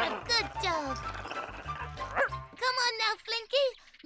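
Cartoon dog's voiced barks and yips over background music: sliding, whining calls first, then a quick run of short yips in the second half.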